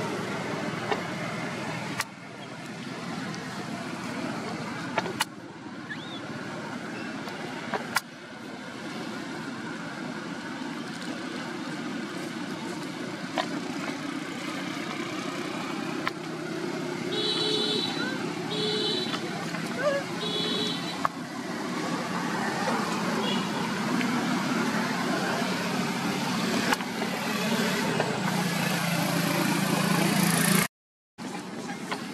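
Steady road traffic noise from passing vehicles, with three short horn toots about a second and a half apart a little past the middle.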